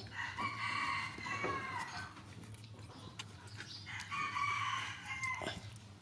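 A rooster crowing twice, each crow about a second and a half long and ending in a falling note.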